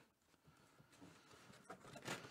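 Near silence: room tone, with a few faint soft ticks in the second half.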